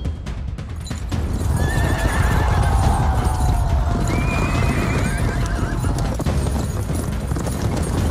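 A troop of horses galloping, a dense rumble of many hoofbeats, with horses whinnying several times from about a second and a half in, over a film score.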